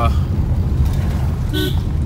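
Steady low rumble of a car's engine and tyres heard from inside the cabin while driving on a rough, broken road.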